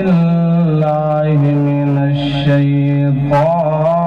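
Devotional vocal chanting in long held notes, the pitch stepping and gliding slowly from one sustained note to the next.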